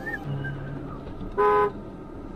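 One short car horn honk, about a third of a second long, about a second and a half in.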